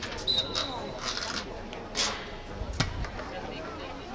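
Spectators' voices and calls at an outdoor soccer game, with a short, steady, high whistle blast near the start and a sharp thud a little before the end.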